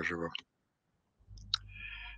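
A man's word trails off into a gap of silence, then a single short click sounds about one and a half seconds in, followed by faint low noise.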